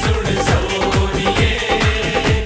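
Instrumental passage of a Bollywood film song: a dance beat of low drum strokes that each drop in pitch, several a second, under steady held instrumental notes, with no singing.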